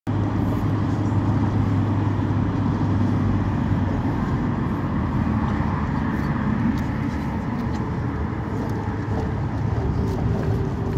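Inside a moving local bus: a steady engine drone and road noise. A strong low hum eases off about halfway through, with a few faint rattles.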